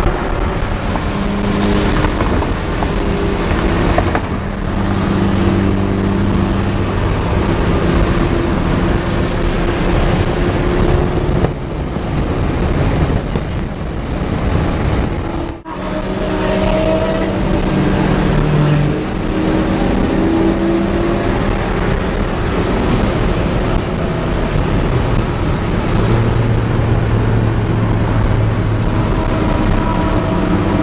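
Cars driving at freeway speed heard from inside a car's cabin: steady road and wind noise with engine notes that hold and shift in pitch as the cars accelerate and cruise. The sound drops out briefly about halfway through.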